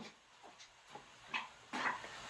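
Faint, high-pitched cries of a child screaming in another room: a few brief ones, then a longer, louder one near the end, with near quiet between.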